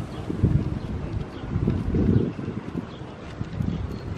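Wind buffeting the camera microphone in uneven gusts, heard as a deep, irregular rumble.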